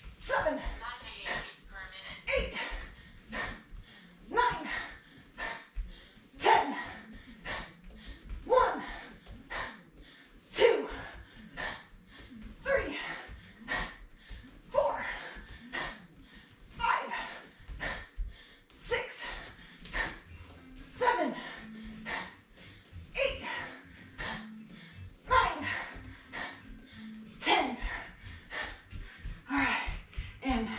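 A woman's short, sharp voiced exhalations, about one a second, timed with each elbow strike and backfist of a cardio kickboxing set.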